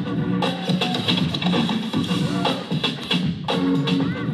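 Breakbeat music played by a DJ, with a steady, driving drum beat and a bass line under it.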